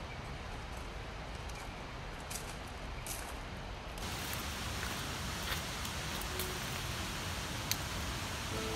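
Steady outdoor background rush with a few faint, scattered crunches of footsteps on gravel.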